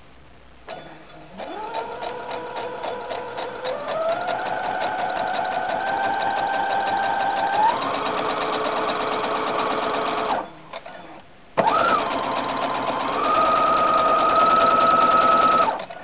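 Brother SQ9000 computerized sewing machine sewing a long straight stitch to gather a fabric strip. Its whine rises as it speeds up soon after the start and steps up again partway through. It stops for about a second, then starts again and runs steadily until just before the end.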